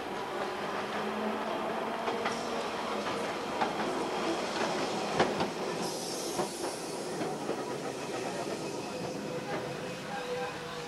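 A tram passing close by in the street, its wheels clattering over the rails, with a run of clicks and knocks through the middle seconds and a brief hiss near the blurred pass.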